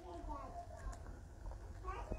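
Sipping a Pepsi-and-milk drink from a glass mason jar, with a short wavering voice-like sound near the start and again near the end.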